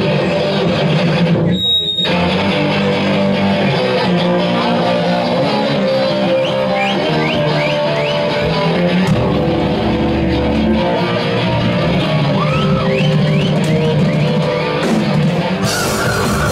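Live rock band playing loud: electric guitars, bass guitar and drum kit, with a short break in the sound about two seconds in.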